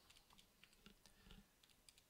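Near silence: room tone with a few faint, scattered clicks.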